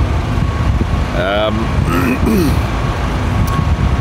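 Steady, loud low rumble of outdoor background noise, with two brief wordless sounds from a man's voice about a second and two seconds in.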